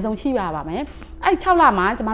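Speech only: a woman talking in Burmese, with a short pause just after the middle.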